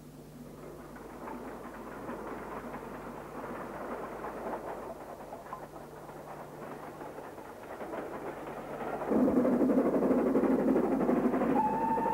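Steam locomotive approaching, its rumble and rail clatter building steadily and growing suddenly louder about three quarters of the way in as it draws close. Near the end a steady whistle blast begins.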